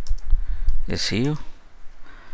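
Computer keyboard keys clicking as a short command is typed, several quick keystrokes in the first second.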